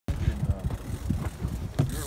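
Wind buffeting the microphone in uneven low rumbles, with faint fragments of a man's voice.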